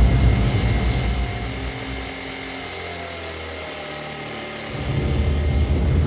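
Motor scooter engine running as the scooter rides toward the listener: a steady low rumble, loudest at first, easing after about two seconds and growing again near the end.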